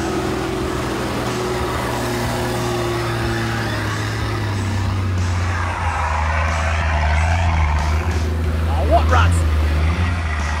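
Toyota LandCruiser 80 Series engine running steadily at low revs as the truck crawls up a steep, dusty hill climb with its diff lockers engaged, the pitch shifting slightly partway through.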